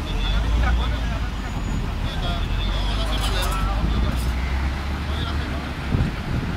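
A heavy truck's engine running with a steady low rumble that eases off near the end, with people talking over it.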